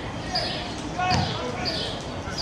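A football kicked on a grass pitch: a sharp thud about a second in, among players' shouted calls, with birds chirping.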